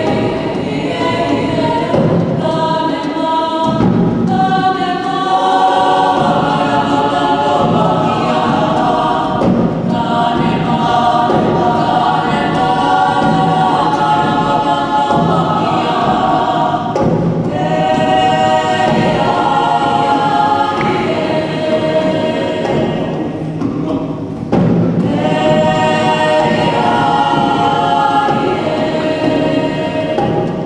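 Mixed choir of young voices singing a Māori song in harmony, in long sustained phrases with brief breaks between them.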